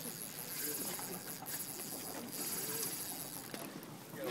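Fishing reel buzzing in a high-pitched ratchet for two long stretches, with a short break near the middle, as a hooked redfish pulls on the bent rod.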